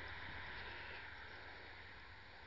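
Faint, steady outdoor background noise: a low rumble under a hiss, with no distinct sound event.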